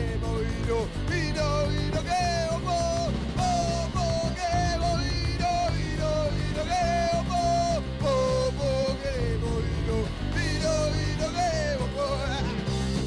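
Punk rock band playing live: electric guitar, electric bass and drum kit, with a male voice singing a wavering melody in Spanish over them.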